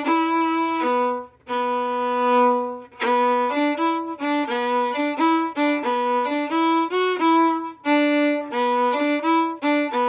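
Solo fiddle bowing the harmony part of a minor-key fiddle tune at medium tempo, a lively run of separate notes with one longer held note about two seconds in.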